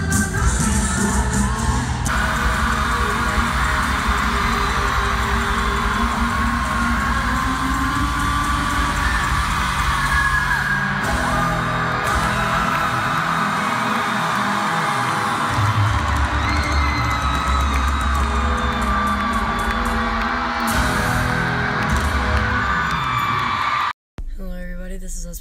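Live pop-rock band playing through an arena PA, recorded on a phone from the stands, with the crowd whooping and singing along. The sound jumps abruptly about 2 and 11 seconds in where the footage is cut.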